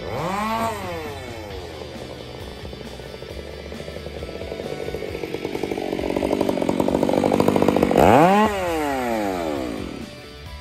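Stihl chainsaw revved briefly, its pitch rising then falling. It then runs at idle with its firing beats growing louder, and is revved again about eight seconds in.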